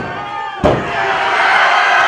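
A single sharp slap on the wrestling ring's canvas about two-thirds of a second in, evenly spaced after two earlier slaps like the count on a pin, over a crowd shouting and starting to cheer.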